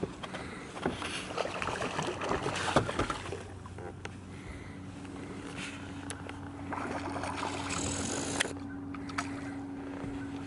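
Steady low hum of a bass boat's motor, joined by a second, higher hum about halfway through. Early on it is mixed with scattered clicks and rustles of rod-and-reel handling while a striped bass is played to the boat.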